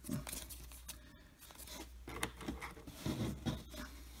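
Faint rustling and light scraping of baseball cards being handled in the fingers, with scattered small clicks.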